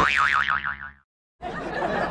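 A cartoon-style 'boing' sound effect whose pitch wobbles quickly up and down, cutting off after about a second. After a short silence a different edited-in sound starts, with a laughing texture.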